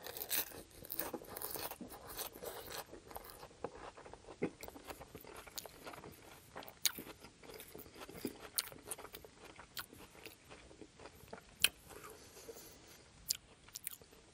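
Close-up chewing of a mouthful of crisp lettuce salad. The crunches are dense in the first few seconds, then come more sparsely, with a few sharp clicks as a metal fork works in a glass bowl.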